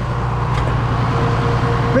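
John Deere tractor engine running at a steady drone as the tractor drives along a field, with a faint higher whine that comes in about half a second in.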